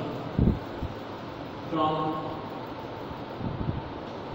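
Chalk writing on a blackboard: soft taps and scrapes, with a louder knock about half a second in, over a steady fan-like hum. A brief spoken sound comes about two seconds in.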